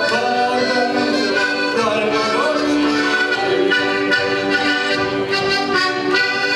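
Two button accordions (Lithuanian armonikas) playing a folk tune together as a duet, with a steady, continuous sound of held and moving notes and no break.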